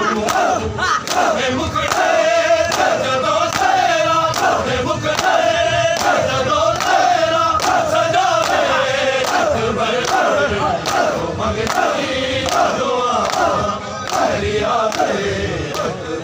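A large crowd of men chanting a noha in unison, with hands slapping bare chests (matam) together in a steady rhythm.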